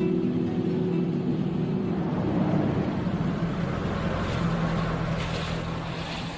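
Street traffic: a truck driving past, its engine and tyre noise as a steady rushing sound with a low hum.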